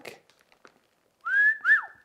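A person whistling a two-note wolf whistle about halfway through: a rising note held high, then a second note that rises and swoops sharply down.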